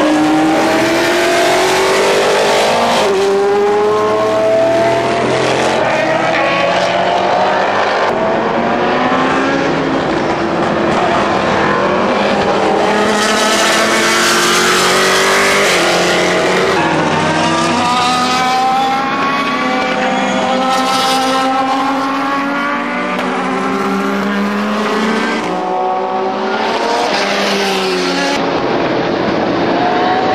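Endurance race cars, both sports prototypes and GT cars, passing one after another at full racing speed. Their engine notes overlap and repeatedly rise in pitch as they accelerate through the gears.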